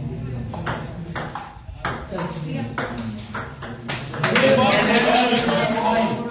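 Table tennis rally: the celluloid-type plastic ball clicking off the rubber bats and the table top, several strikes a second for about four seconds. Voices from the players and onlookers come in near the end as the point ends.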